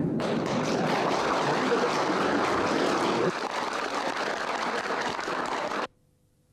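Large audience applauding steadily, cut off suddenly near the end.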